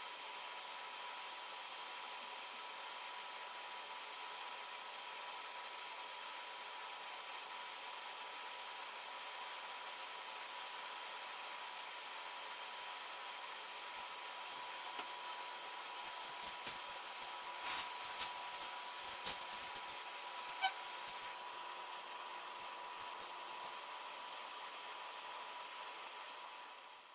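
Steady room hiss with a faint steady whine; in the second half, a scattered handful of clicks and crackles from handling woven plastic flour sacks at a sewing machine.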